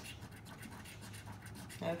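A coin scratching the coating off a lottery scratch-off ticket in quick, repeated short strokes.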